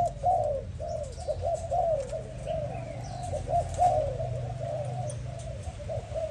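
Several Malaysian-strain spotted doves cooing over one another in a steady stream of short arched coos. Under the coos runs a steady low hum from an exhaust fan.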